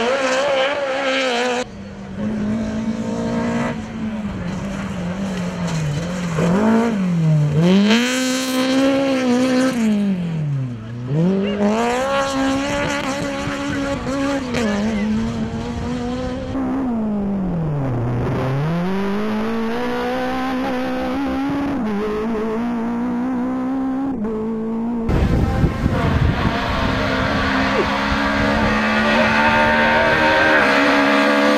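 Rally car engine at full throttle, climbing in pitch through the revs and then dropping sharply several times as the driver lifts and shifts, before pulling hard again. Near the end a closer car comes in with a louder rush of noise under the engine.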